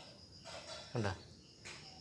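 A faint, steady, high-pitched insect trill in the background, with one short spoken word about a second in.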